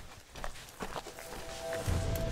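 Footsteps and trekking-pole tips tapping on a stone path, a few light clicks. Background music with a held tone comes in about halfway, and a low bass line joins near the end.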